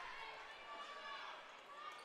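Faint murmur of a gym crowd with distant voices, during a stoppage in play.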